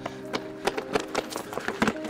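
Quick running footsteps on pavement, a rapid run of sharp steps, over a soft sustained music score.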